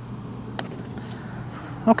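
A single light click of a mallet putter striking a Seed SD-05 urethane-covered golf ball, about half a second in, over steady background noise.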